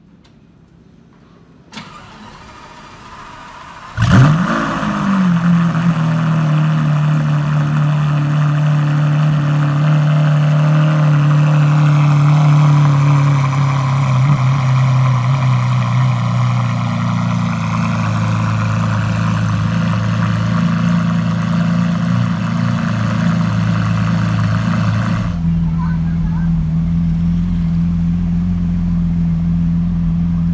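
Lamborghini Aventador's V12 engine on a cold start. A click about two seconds in comes before it; the engine catches about four seconds in with a sharp rising flare, then holds a loud, fast cold idle that slowly settles lower. About 25 seconds in, the sound cuts to a steadier, deeper engine rumble.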